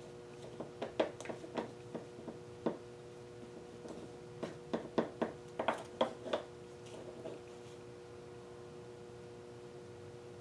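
Wooden craft stick and gloved fingers clicking and tapping irregularly against a small glass cup while stirring acrylic paint, for about the first seven seconds. After that only a faint steady hum remains.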